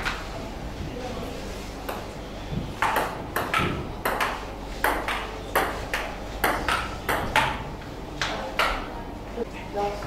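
Table tennis rally: the plastic ball clicking off the table and the rubber-faced paddles, a sharp tap roughly every half second, starting about two seconds in.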